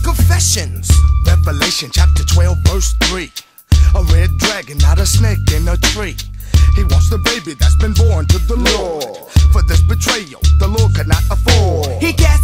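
G-funk hip-hop track with rapping over a heavy, repeating bass line and a thin, high held lead tone. The beat drops out briefly a few seconds in.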